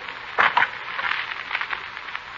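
Crackle and hiss from an old radio broadcast recording between lines of dialogue. There is one short sharp sound about half a second in and a weaker one just after.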